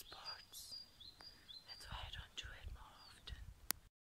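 A woman's quiet, breathy voice, close to a whisper, with faint short high chirps in the first half. A single sharp click sounds just before the sound cuts off.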